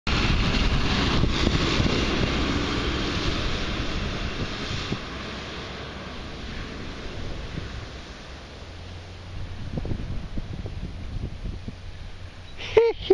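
Box delivery truck passing close by, its engine and tyres loud at first and fading over the first few seconds as it drives away. Near the end comes a distant rushing of water as the truck drives through floodwater covering the road.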